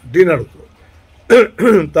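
A man's brief vocal sounds between sentences: a short voiced syllable at the start, then after a pause a sharp breathy burst about a second in, followed by another short voiced sound.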